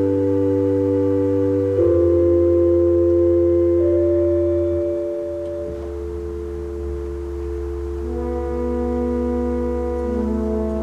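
1885 Hilborne L. Roosevelt pipe organ (Opus 290) playing slow, loud sustained chords over a deep held bass note, the harmony shifting about two seconds in, again around four to six seconds, and once more near the end.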